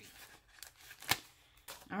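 A cardstock sticker sheet being handled and a sticker peeled off it: light rustling with a few sharp paper clicks, the loudest a single snap about a second in.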